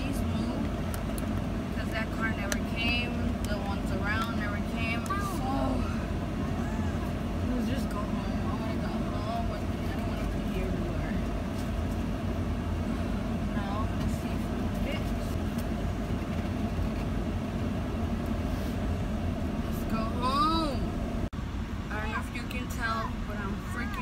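A truck's engine idles with a steady low rumble, heard from inside the cab, and voices come and go over it.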